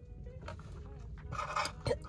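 A sip of coffee going down the wrong way: a sudden splutter about a second and a half in, over the low steady hum of a car cabin.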